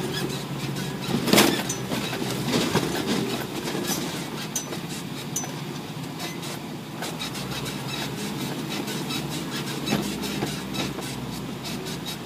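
Isuzu NPR 350 4WD truck's diesel engine running steadily under way, with the cab and body rattling, knocking and squeaking over uneven track. The loudest knock comes about a second and a half in, with smaller ones later.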